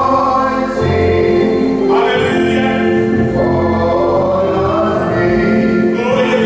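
Church congregation singing a slow gospel song together, holding long notes, with organ accompaniment.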